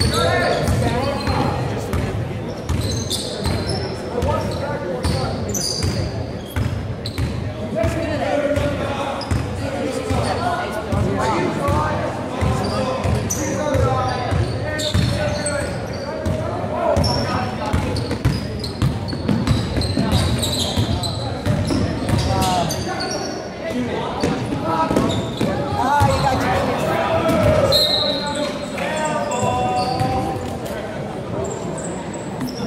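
Basketball game sounds in a gym: the ball dribbling and bouncing on a hardwood court, many short knocks throughout, over the steady chatter of spectators' voices.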